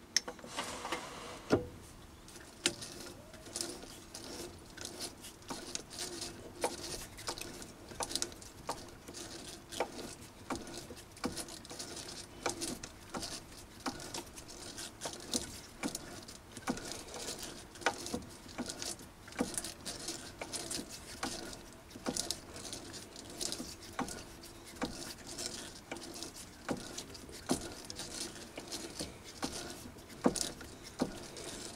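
Tapping a thread by hand on a mini lathe: the chuck is turned slowly by hand while a 6 mm tap with a spring-loaded chamfer tool cuts into a steel bar. The work gives off irregular clicks and ticks, a few a second.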